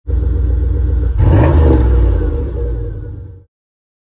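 Chevrolet Monte Carlo SS engine running loudly, revved once about a second in, then dying away before cutting off suddenly.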